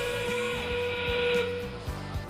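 FIRST Robotics Competition field's 30-seconds-remaining warning: one steady steam-whistle blast that stops about a second and a half in.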